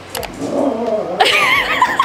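Siberian husky 'talking': a drawn-out vocal answer when asked if it wants dinner. It starts low and rises about a second in to a louder, higher, wavering call.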